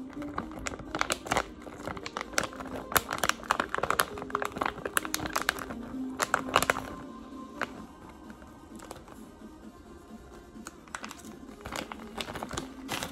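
Thin plastic bag of shredded pizza cheese crinkling and rustling as it is handled, dense crackles for about the first seven seconds, then only a few, over quiet background music.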